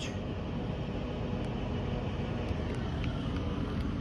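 The 1994 Arctic Cat ZR580's two-cylinder two-stroke engine idling with a steady, even low rumble.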